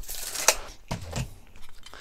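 A steel tape measure reeling in with a short rattling rush that ends in a sharp snap about half a second in, followed by a few fainter knocks.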